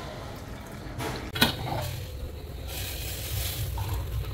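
Water poured from a steel pan into mugs, a splashing trickle strongest near the end, with one sharp metal clink about a second and a half in. A low steady hum underneath.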